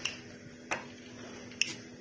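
Three faint, short clicks of a wheel pizza cutter against the board as it cuts rolled pasta dough into strips, over a faint steady hum.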